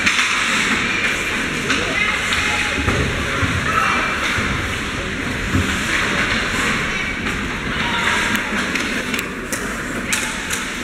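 Live ice hockey game ambience: a steady wash of skates scraping the ice, with indistinct spectator chatter and a few sharp stick or puck clicks near the end.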